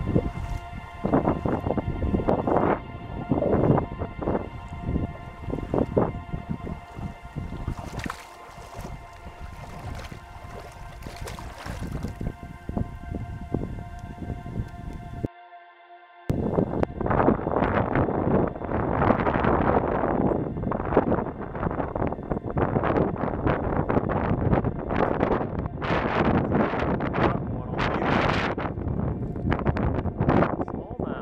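Wind buffeting the microphone, with splashing and handling noise at the water's edge, over quiet background music with steady held tones. A brief drop-out about halfway, after which the wind noise is louder.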